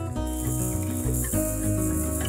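Background music: sustained pitched notes over a bass line that changes note every half second or so.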